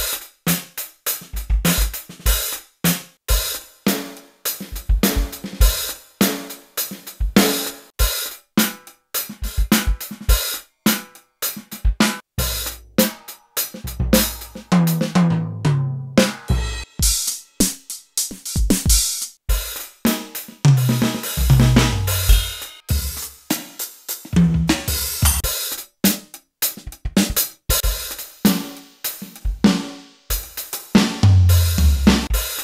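Built-in drum kit sounds of a Roland TD-1 module, played from the pads of a TD-1KPX2 electronic kit: short grooves of kick, snare, hi-hat and cymbals, moving to a new preset kit every few seconds. Now and then a tom fill runs down in pitch.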